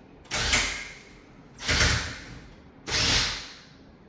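Cordless drill run in three short bursts, driving a fastener into a metal bed frame; each burst comes on sharply and then trails off.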